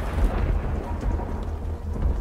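A steady, deep low rumble with a hiss over it, like thunder with rain, laid under the scene.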